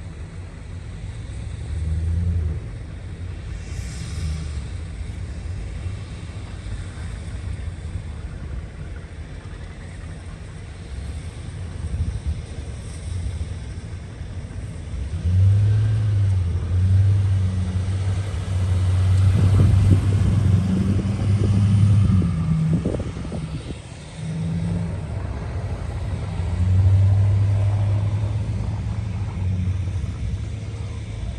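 Pickup truck engine pushing snow with a Boss V-plow, a low rumble that grows louder and works harder during two stretches, the longer one from about halfway through.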